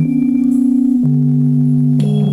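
Electronic keyboard with a smooth, organ-like voice holding a sustained chord, its top note wavering slightly; a new lower note comes in about a second in and is held.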